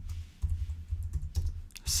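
Typing on a computer keyboard: a short, irregular run of keystrokes as a word is entered.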